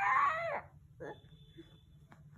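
A baby's short high-pitched vocal squeal at the very start, falling in pitch as it ends, followed by a brief softer vocal sound about a second in.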